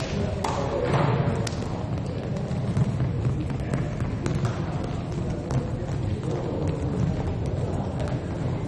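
Reverberant sports-hall ambience during a break in volleyball play: scattered thuds and taps, typical of volleyballs bouncing on the court floor, over a low hum of players' voices.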